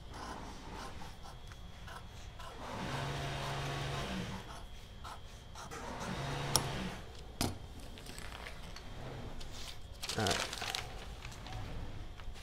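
Scissors cutting through paper pattern sheets, a dry scraping crunch, with two sharp clicks in the middle and a rustle of paper being lifted and moved near the end.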